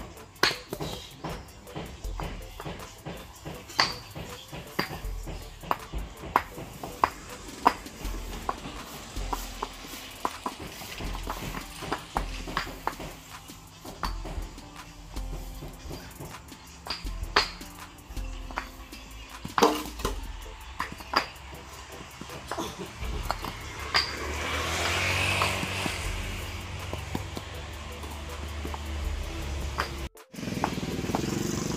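Background music with a steady low beat. Over it come irregular sharp clinks of hexagonal concrete paving blocks knocking against each other as they are set on the sand bed. A rushing noise swells for a few seconds about two-thirds of the way in.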